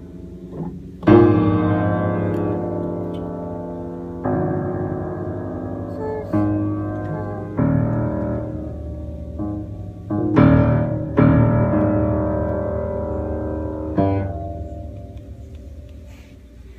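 Upright piano keys stamped on by a baby's feet: about eight random clusters of low and middle notes, each struck suddenly and left ringing as it fades. The loudest come about a second in and again just past the middle.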